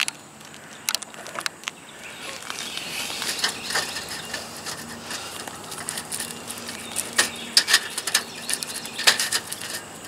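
Scattered clicks, taps and scrapes as the end cap of a roof ridge vent is handled and pushed back into place by hand.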